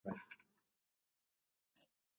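Near silence: room tone after a brief spoken "right", with one faint tick near the end.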